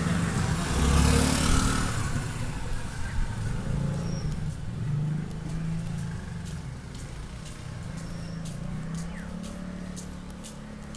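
Motor vehicle engine rumble, slowly fading away, with a few faint clicks in the second half.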